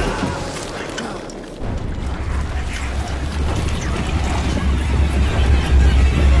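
TV drama soundtrack: dramatic score with action sound effects. A deep low rumbling drone sets in about a second and a half in and holds steady under busier higher sounds.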